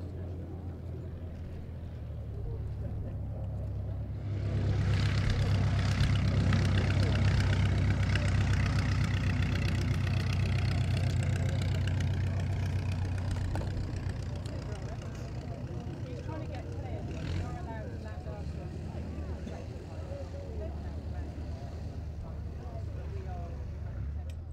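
Miles Magister's de Havilland Gipsy Major four-cylinder engine and propeller running. The engine is opened up to full power about four seconds in for the take-off run, then its sound drops off as the aircraft lifts away.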